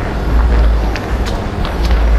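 Footsteps on a paved alley, a few sharp ticks about half a second apart, over a steady low rumble on the microphone.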